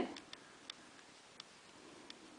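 A few faint, separate ticks from a metal crochet hook and the cotton work being handled as two chain stitches are made.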